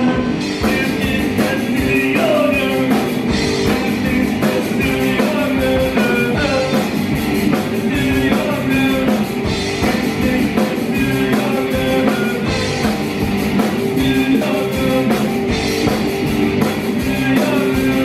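Live rock band playing: amplified electric guitars, bass guitar and a drum kit keeping a steady beat.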